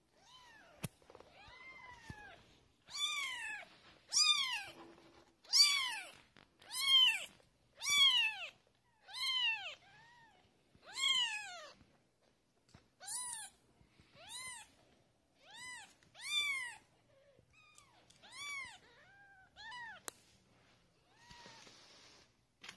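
Week-old Ragdoll kittens mewing: a series of about fifteen high, thin cries, one every second or so, each rising and then falling in pitch. The cries are loudest in the first half.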